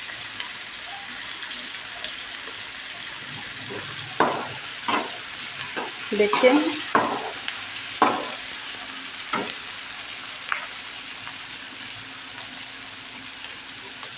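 Sliced onions sizzling steadily in hot oil in a metal wok, being fried to brown for an onion masala. From about four seconds in to about ten seconds in, a slotted metal spatula stirs them in a series of scrapes and clanks against the pan. The stirring stops near the end and the steady sizzle goes on.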